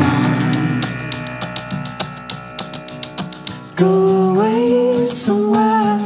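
Live electro-pop music with acoustic guitar and keyboards. The bass drops out at the start, leaving a quieter stretch of fast, even ticking beats, and about four seconds in a loud held melody line comes in, bending upward in pitch.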